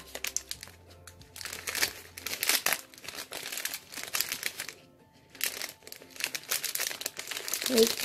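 Shiny metallised plastic snack wrapper crinkling in repeated bursts as it is pulled and opened by hand.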